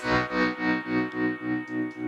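Electric guitar through a Boss GT-1000's Fender Deluxe Reverb amp model, with the gain and reverb turned up. A held chord pulses evenly about three times a second under the tremolo effect.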